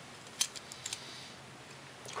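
Small metal clicks from a furnace pilot burner bracket and thermocouple fitting being handled and worked apart: one sharp click about half a second in, then a few lighter ticks.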